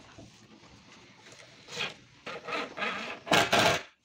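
Scraping and rubbing against a wooden subwoofer cabinet: a few rough strokes that grow louder, the loudest just before the end, then stopping suddenly.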